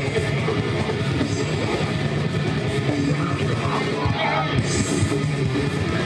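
Live heavy metal band playing: distorted electric guitars, bass and drum kit at a steady, dense loudness.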